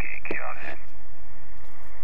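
Single-sideband receive audio from a Yaesu FT-817ND's speaker: a thin, narrow-band voice for under a second, then steady band-noise hiss.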